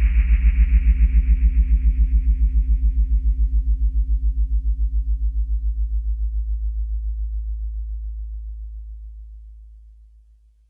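The last held chord of a garage-pop song ringing out on guitar, pulsing rapidly and evenly. Its higher notes die away within the first few seconds and the low note fades to nothing near the end.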